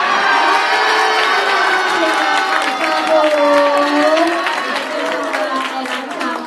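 Crowd of spectators erupting all at once into cheers and shouts at the judges' decision, with clapping joining in toward the end.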